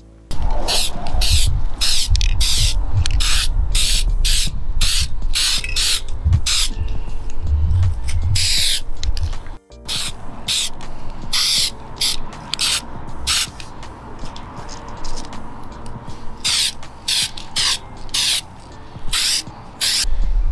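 Aerosol can of Krylon Black Lava webbing spray hissing in dozens of short bursts, a few lasting about a second, as it lays stringy lines over a lacrosse head. Low wind rumble on the microphone runs underneath.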